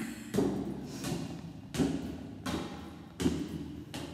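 Footsteps climbing a flight of stairs: about five thuds, roughly one every three-quarters of a second.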